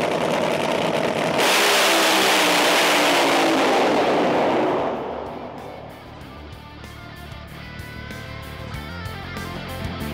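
A race car engine at full throttle, very loud for a few seconds with its pitch falling slowly, then fading away about halfway through as music with a steady beat takes over.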